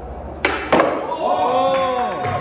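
Skateboard ollie on a wooden floor: a sharp crack of the tail popping, then a louder clack of the board landing about a quarter second later. A person's voice follows.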